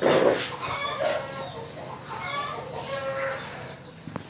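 Chickens clucking: short, repeated pitched calls.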